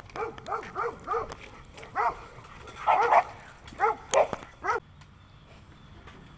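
A dog barking repeatedly. First comes a quick run of short barks, about three a second, then a few more spaced-out barks, the loudest about three seconds in, stopping near the five-second mark.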